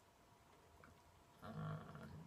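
Near silence, then about a second and a half in, a man's voice makes a drawn-out, steady-pitched hesitation sound, an "uhh" while searching for his next English words.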